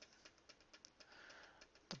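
Near silence: room tone with a faint run of small clicks, several a second, from a push button being pressed over and over to scroll down a menu.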